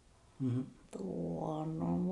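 A person's voice: a short "hmm", then a long, level-pitched hum held for over a second.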